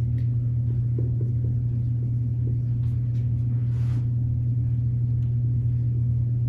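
A steady low hum fills the room, with faint strokes of a dry-erase marker writing on a whiteboard, the clearest about four seconds in.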